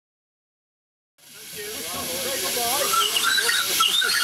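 Live-steam miniature locomotive, a pseudo Midland Compound numbered 1025, hissing steadily as it stands in steam; the sound comes in about a second in, swelling over a second.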